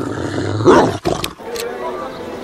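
A loud, growling roar that swells to a peak just under a second in and cuts off abruptly, followed by a few sharp clicks.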